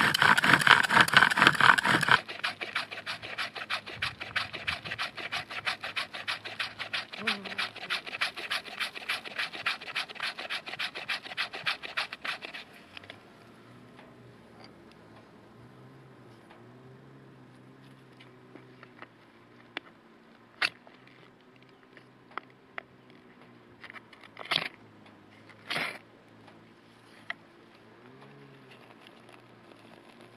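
Bow drill in use: a wooden spindle spun rapidly back and forth in a wooden hearth board, making a fast, rhythmic rasping scrape. The rasping is loudest at first and stops about twelve seconds in. After that it is quiet apart from a few sharp clicks.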